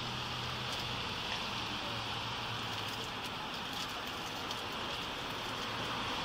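Steady hiss with a low, even hum underneath: a vehicle engine idling.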